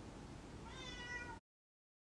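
A cat meowing once, faintly, a little past the middle; the sound cuts off suddenly shortly after.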